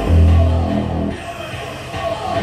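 Loud live rock band music with heavy held bass notes; the bass drops away about a second in, leaving a thinner sound.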